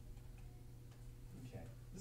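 Quiet classroom room tone with a steady low electrical hum and a few faint, irregular clicks. A man's voice starts in the last half second.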